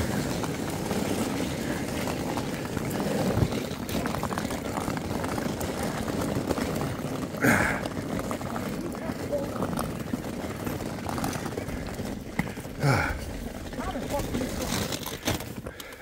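Wheeled suitcase rolling over paving, a steady rattling roll, with footsteps.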